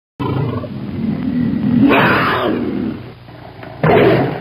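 A tiger roar sound effect: a low growl that swells into a loud roar about two seconds in and fades by three seconds, with a second sudden loud burst just before the end.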